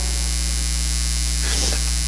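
Steady electrical mains hum with its evenly spaced overtones and a hiss above, carried on the sound system's recording.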